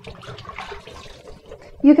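Swiss chard leaves being swished and rinsed in a bowl of water at a sink: quiet, irregular splashing and sloshing.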